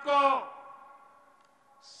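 A man speaking over a public-address system. One word ends and its echo fades away over about a second. Just before he speaks again, there is a short breath in.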